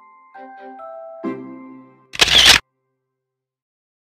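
A short phrase of light instrumental music with sustained single notes ending on a chord, then about two seconds in a loud, brief camera-shutter snap sound effect that cuts off abruptly.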